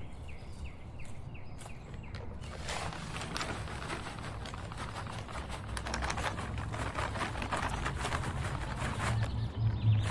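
Dry granular fertilizer poured from a paper bag into a planting hole: a grainy rustling patter that starts about two and a half seconds in and keeps going.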